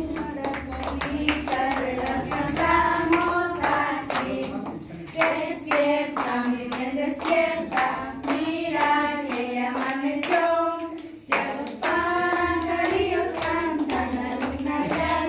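A group of women singing a song together and clapping their hands along, with a brief pause in the singing about eleven seconds in.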